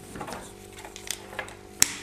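Soft rustling of a fabric chest heart-rate strap being handled, with a few light clicks and one sharp click near the end as the sensor pod is pressed onto the strap's snap studs.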